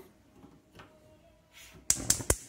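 Mostly quiet, then near the end one sharp, loud click from a gas stove burner's electric spark igniter as the burner lights, now that its grease-clogged ignition port has been cleared.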